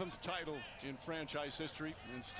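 A man speaking English, faint and low in the mix, from the clip being watched.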